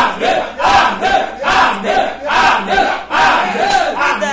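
A man's voice shouting "Amen" over and over in fervent prayer, a loud rhythmic chant of about two calls a second.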